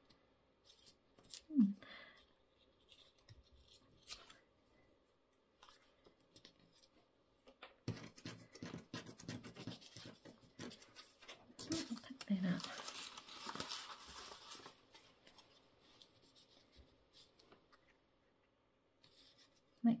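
Paper being handled on a cutting mat: soft rustling and scraping that starts about eight seconds in and is loudest a few seconds later, with a short hum from the crafter twice.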